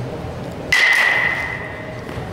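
Metal baseball bat striking a ball under a second in: a sharp crack followed by a single high ringing ping that fades over about a second.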